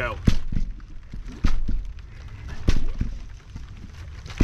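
Partly filled plastic bottles being flipped and landing on a trampoline mat: about three landings, each a sharp thud followed quickly by a second as the bottle bounces off the mat.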